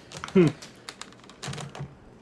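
Computer keyboard being typed on: a few scattered, irregular key clicks.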